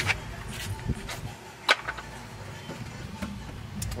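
A handful of sharp plastic clicks and knocks from car interior trim being handled and pulled off, the loudest a little under two seconds in, over a low steady hum.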